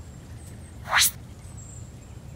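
A short rising whoosh sound effect about a second in, sweeping quickly up from low to very high and louder than anything else, over a steady low rumble.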